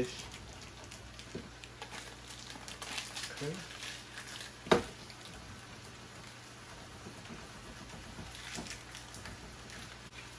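Block of pepper jack cheese being grated on a metal box grater: a run of quick, patter-like scraping strokes, thickest over the first few seconds and again near the end, with one sharp knock about halfway through.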